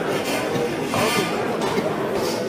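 Indistinct voices in a large sports hall, spectators and corners calling out during an amateur boxing bout, with a steady hall din underneath.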